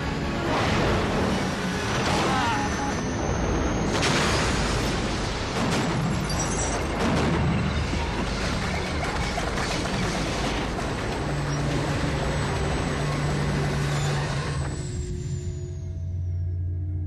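War-film soundtrack of a UH-60 Black Hawk helicopter being shot down and crashing: booms and crash impacts with debris, mixed under dramatic music. A low held music tone comes in over the last few seconds.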